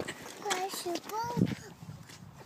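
A young child's voice making two short, high-pitched vocal sounds that are not recognisable words.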